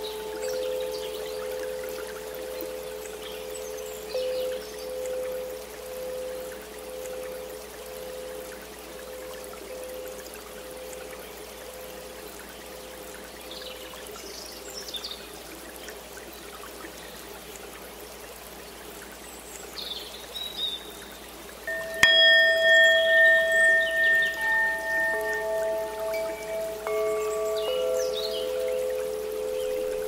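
Meditation background music: soft sustained tones, one slowly pulsing, over a faint trickle of water. About 22 seconds in a bell is struck and rings on with several clear tones, and further held tones join a few seconds later.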